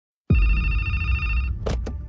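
A deep boom sets off a steady electronic ringing tone, much like a phone ringtone, held for just over a second. Two short swishes follow near the end.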